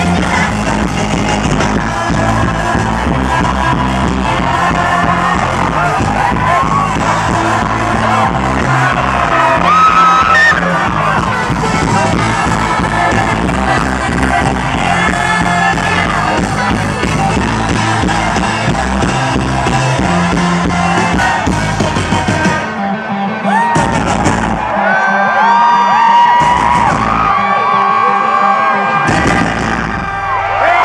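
Live rock band playing loud with sung vocals and crowd yelling along. About three quarters of the way through, the full band stops, leaving the crowd cheering and whooping, broken by three short band hits as the song closes.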